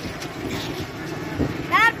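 Steady outdoor street background of traffic noise, with a short spoken syllable near the end.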